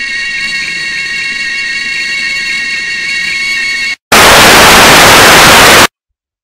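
A steady electronic drone of several high held tones, with a faint pulse. About four seconds in it stops and a loud burst of TV static hiss follows for about two seconds, then cuts off suddenly.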